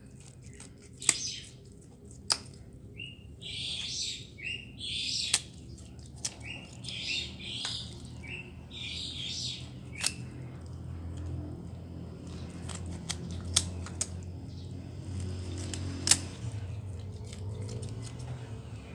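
Kitchen scissors cutting through raw chicken pieces, a sharp snip every few seconds. Birds chirp in the background.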